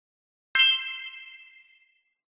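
A single bright metallic ding about half a second in, ringing with many high tones and fading away over about a second and a half.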